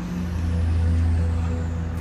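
Tractor-type turf machine's engine running as it drives close past on the grass, a steady low hum that swells just after the start, over background music.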